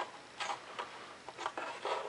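Hands positioning a small servo and its wire against a foam-board wing: soft rubbing with a few light taps.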